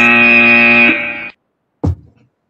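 An electronic chime or timer tone: a steady chord of several tones held for about a second and a half, then cut off, followed by a brief low thud. It marks the end of a public speaker's allotted testimony time.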